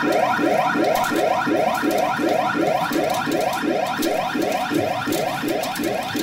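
Pachinko machine P Umi Monogatari 4 Special BLACK playing its reach sound effect: a steady run of short falling electronic tones, about four a second, while the reels roll.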